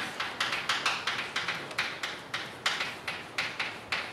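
Chalk writing on a blackboard: an uneven run of quick taps and scratchy strokes, about four a second.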